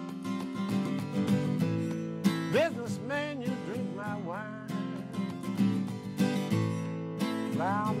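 Martin cutaway steel-string acoustic guitar strummed through an A minor, G, F chord progression, with a man singing the words over it in a half-spoken style, the voice coming in about two and a half seconds in and again near the end.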